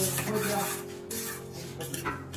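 A mason's trowel scraping over sand and mortar on stone paving slabs, in two long strokes.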